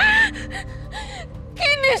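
A woman's sharp gasp of shock, followed by short sobbing breaths and then a wailing cry that falls in pitch near the end, over soft background music.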